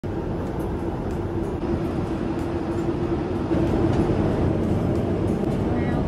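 Steady roar inside an airliner's cabin in cruise flight: continuous engine and airflow noise with a low drone.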